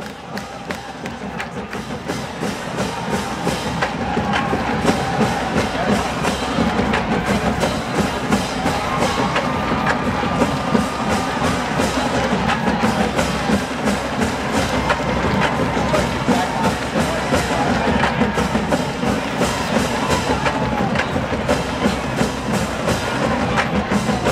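College marching band playing on the field: the drumline keeps a steady beat under sustained brass and wind parts. The music swells over the first few seconds, then stays loud.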